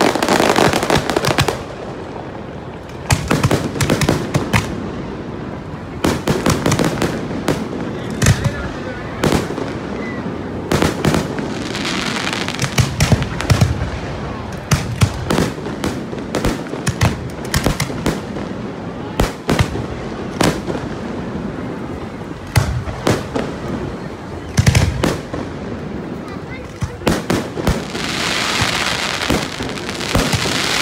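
Aerial fireworks going off: a long, irregular run of sharp bangs and cracks from bursting shells, with a dense crackling hiss near the end.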